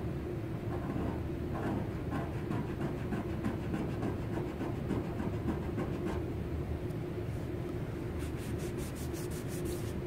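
Fingernail scratching and rubbing at black car paint that brake fluid has softened over nearly a day: a run of faint quick scrapes, fastest near the end, over a steady background hum.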